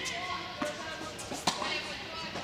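A tennis ball struck hard with a racket about one and a half seconds in, a sharp crack that echoes in the hall, after a softer hit or bounce earlier.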